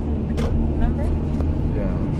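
Steady low road and engine rumble inside a moving car's cabin, with a short click about half a second in.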